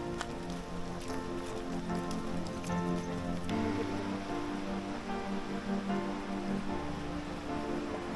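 Background music with sustained notes over a steady patter of rain, the music changing about three and a half seconds in.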